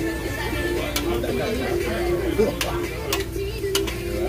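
Metal tongs clicking against a tabletop barbecue grill as meat is turned: a few sharp clicks, about a second in and several more in the second half, over background music and voices.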